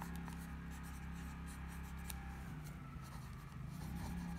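A pen scratching on lined notebook paper as a short note is handwritten, with small ticks of the pen tip, over a low steady hum.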